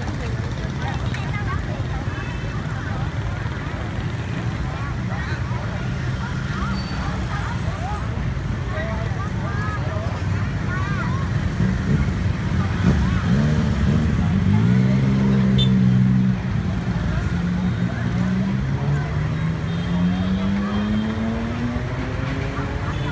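Scooter and motorbike traffic passing close on a busy street, over a background of people's voices. The engines are loudest about two-thirds of the way through, and near the end one engine rises in pitch as the bike speeds up.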